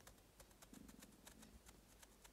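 Near silence with faint, small clicks from a Sparrows disc detainer pick working the discs of a Baton disc padlock, as the binding tenth disc is being picked.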